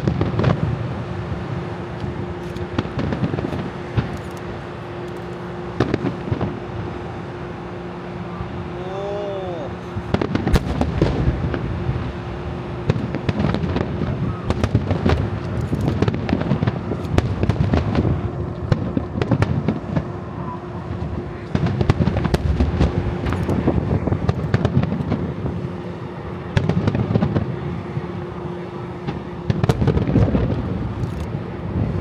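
Starmine fireworks, rapid-fire aerial shells bursting over the sea: booms and crackles, fairly sparse at first and then packed into near-continuous volleys from about a third of the way in. A steady hum runs underneath.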